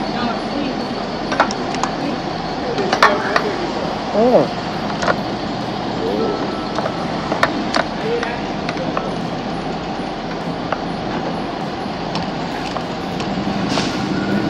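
Steady background of traffic and faint voices, broken by a few sharp clicks.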